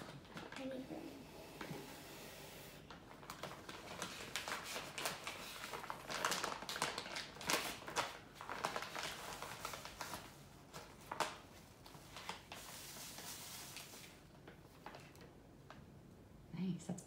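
Crinkling and rustling of a bag of coconut sugar being handled and opened, with scattered irregular rustles and small clicks and a longer hissy rustle near the end.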